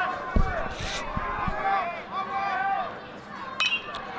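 Ballpark crowd chatter and background voices, then, near the end, one sharp metallic ping with a short ring: a metal college baseball bat striking the pitch.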